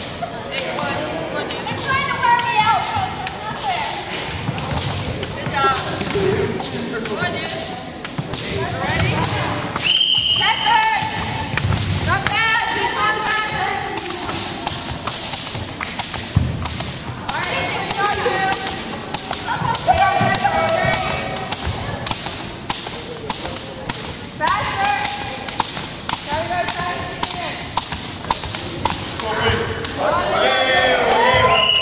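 A long jump rope slapping a wooden gym floor in a steady repeating rhythm as it is turned, with jumpers' feet landing. Voices talk over it on and off.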